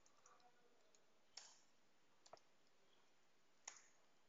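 Near-silent room tone with a few faint computer mouse clicks. The three sharpest come about a second and a half in, just past two seconds, and near the end.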